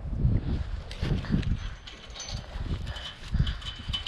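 Chain-link farm gate being handled and unchained, with its chain and metal frame rattling amid irregular knocks and footsteps.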